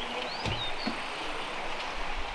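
Outdoor ambience: a steady hiss of background noise with a few faint, high bird chirps early on and a single soft knock about half a second in.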